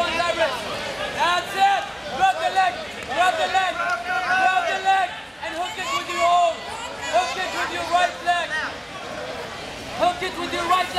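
Overlapping voices of several people calling out over crowd chatter, with no single clear speaker.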